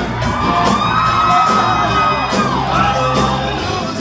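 Live rock band playing, with drums, electric guitar and a singing voice that holds one long note before it falls away.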